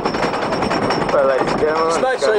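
Roller coaster chain lift clacking as the train climbs a wooden lift hill: rapid, even clicking of the lift chain and anti-rollback ratchet, with a rider's voice over it from about a second in.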